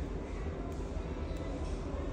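X-Acto hobby knife blade scraping lightly at the positive line of a phone's charging flex cable, exposing the copper for solder: faint, soft scratches over a steady low hum.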